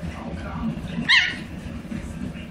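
A small chihuahua-type dog lets out one short, high yip about a second in while play-fighting with another dog.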